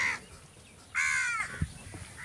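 A bird calling outdoors: a short call right at the start, then a longer, louder call about a second in that drops in pitch at its end. A brief low thump follows just after the second call.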